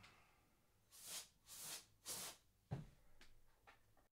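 Canned compressed-air duster sprayed through its straw in three short, faint bursts to blow dust off the LCD panel, followed by a light click.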